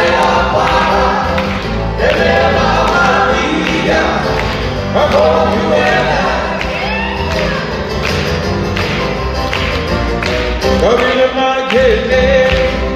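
Live band playing a Hawaiian song on acoustic guitars and keyboard, with a lead vocal sung over it.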